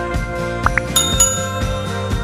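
Background music with a steady beat. About two-thirds of a second in come two quick rising pops, then a bright bell dings twice and rings on: the sound effects of an animated like button, subscribe button and notification bell.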